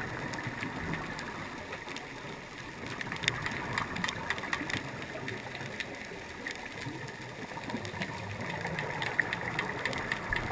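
Underwater ambience picked up by a diver's camera: a steady wash of water noise with many scattered sharp clicks and crackles, thicker after about three seconds.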